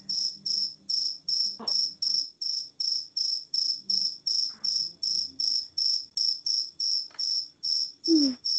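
High-pitched insect chirping, evenly repeated about three and a half times a second without a break.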